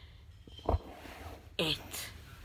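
A quiet pause broken by one brief low thump about two-thirds of a second in, then a boy's voice speaking a football score near the end.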